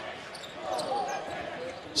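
Arena sound of a college basketball game in play: a basketball dribbled on the hardwood over a steady crowd murmur, with a faint voice about a second in.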